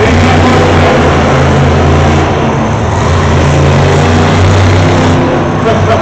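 Monster truck's supercharged V8 engine running loud, its low drone shifting a little in pitch as the throttle changes.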